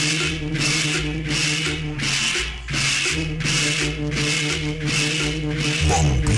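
Cumbia dance music over a sound system, with a pulsing bass line under sustained held notes and a steady scraping rhythm of a guacharaca-style scraper at about three strokes a second.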